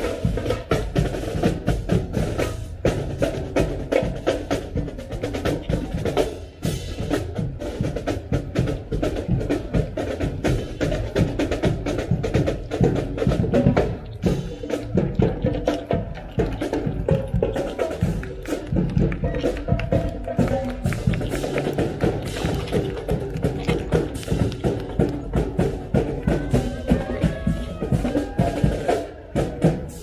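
High school marching band playing on the march: trumpets, saxophones and sousaphones over a steady, busy drum beat.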